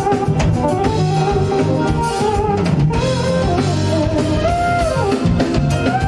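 Live band playing a jazz-funk tune: electric bass, keytar and drum kit, with a melody line that bends in pitch over a steady groove.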